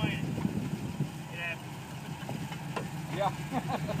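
A Jeep's engine idling steadily while the vehicle sits in the mud.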